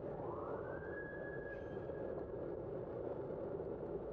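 A high whine rises over about a second, holds steady for a moment and then fades. Under it runs the steady rush of wind and tyres from a bicycle riding along a city street.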